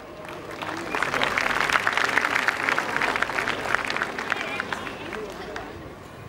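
Audience applauding. The clapping swells during the first second and thins out toward the end.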